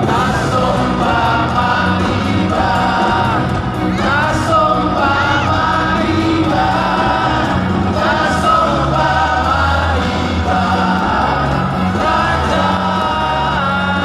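Live music over a stadium sound system: several men singing a Christian song together over a band, with a steady bass line underneath.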